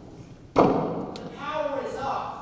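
A single loud thud about half a second in, from a long-handled wooden mallet struck against the stage, followed by a man's voice.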